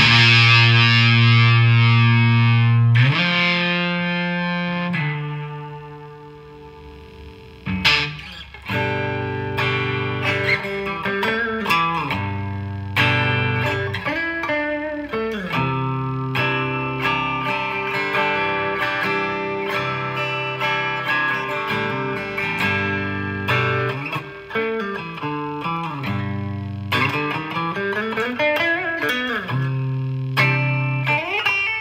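Daisy Rock Elite Venus semi-hollow electric guitar played through a StonegateFx Ugly Fuzz pedal: a loud fuzzed chord rings out and fades over several seconds. From about eight seconds in, riffs and lead lines with string bends follow, played partway through with a JHS Morning Glory overdrive pedal instead.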